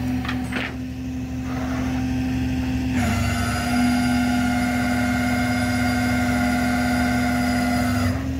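A vehicle engine idling with a steady low hum. About three seconds in, a steady whine from the flatbed's winch joins as it starts pulling the car on its cable toward the tilted deck.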